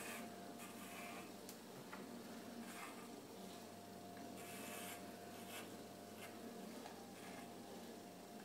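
Corded electric pet clippers running with a faint steady hum, the blade rasping through the fur of a dog's tail in short strokes, louder for a moment about halfway through.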